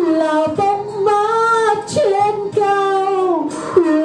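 A woman singing a slow Vietnamese song into a microphone, holding long notes, the last one gliding downward near the end.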